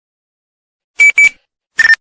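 About a second in, three short electronic beeps: two quick ones close together at one pitch, then a third a little lower in pitch near the end.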